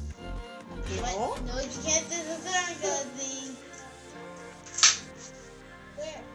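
Upbeat background music, with a child's wavering wordless voice over it for a couple of seconds in the middle. A single sharp click, the loudest sound, comes just before the end.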